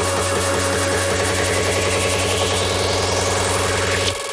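Electronic music build-up from a software synthesizer: a low note pulsing steadily and then faster and faster, with a sweep rising in pitch over the last couple of seconds.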